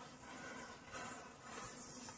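Faint fizzing hiss of a chain of standing matchsticks catching fire one after another, with a few soft swells as more heads flare.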